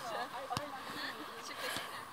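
Faint voices of players calling on a football pitch, with two short knocks of a football being kicked, about half a second in and near the end.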